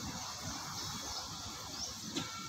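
Faint, steady background hiss of outdoor ambience, with no distinct event standing out.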